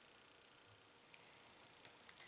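Near silence: faint room tone, with one brief sharp click about a second in and a couple of fainter ticks after it.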